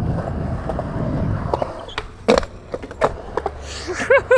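Skateboard wheels rolling on concrete, then a few sharp clacks, the loudest a little past the middle.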